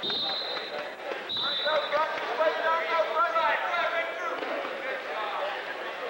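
A referee's whistle blown twice in quick succession, each a steady high blast of about half a second, starting the wrestlers from the down position; overlapping shouts from coaches and spectators follow in a large echoing hall.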